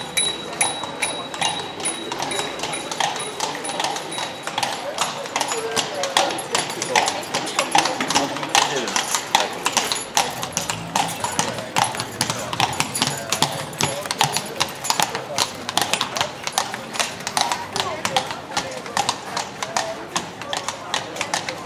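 Horse hooves clip-clopping on a paved street as a pair of horses draw a carriage past: a quick, uneven run of sharp hoof strikes. People's voices are heard alongside.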